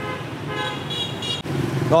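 A vehicle horn sounding two steady toots, a short one at the start and a longer, higher one from about half a second to about a second and a half, over a low steady hum.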